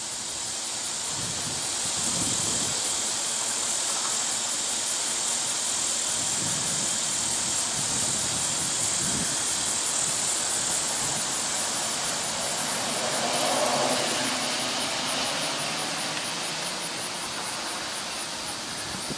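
Steady, high-pitched, finely pulsing insect buzz over outdoor background noise, with a broad rushing swell about three-quarters of the way through.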